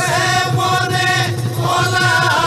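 Bihu folk music: several long held notes at steady pitches, breaking off about a second and a half in and coming back with an upward slide, over a steady dhol drum beat.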